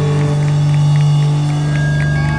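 A live rock band's amplified electric bass and guitar holding one loud, steady low droning note, with no drum hits.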